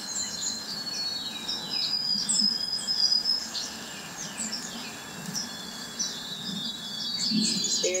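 Small birds chirping and calling: many short, high chirps and quick downward-sliding notes, with a few brief whistled notes held on one pitch.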